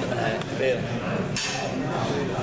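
Bocce balls knocking together: a faint click near the start, then one sharp, loud clack about a second and a half in.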